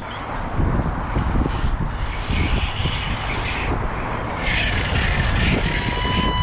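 Wind buffeting the microphone, a rumbling rush that swells into a brighter hiss after about four and a half seconds, with a faint steady high whine underneath.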